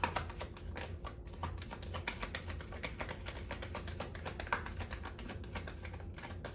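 A deck of tarot cards being shuffled by hand: a rapid, uneven run of soft clicks as the card edges slip against each other.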